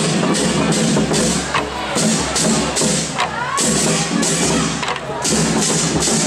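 A drum team beating large drums in a steady march rhythm of about two to three beats a second, with a couple of brief breaks, over the chatter of a crowd.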